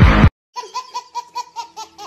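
Loud music cuts off abruptly just after the start. Then a baby laughs in a rapid run of short, high, pitched bursts, about six a second.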